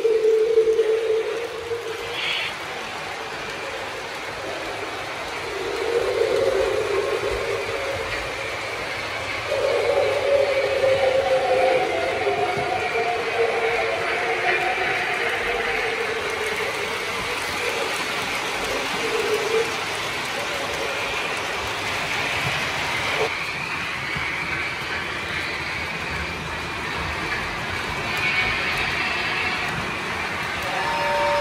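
Lionel O-scale model trains running on three-rail track: a steady rolling rumble of wheels on the rails, with several held lower tones of a couple of seconds each in the first twenty seconds.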